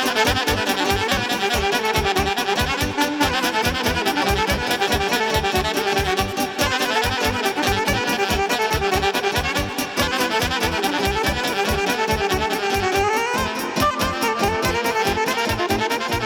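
A section of alto saxophones playing an instrumental melody together over a fast, steady beat from the backing band, with a rising run late on.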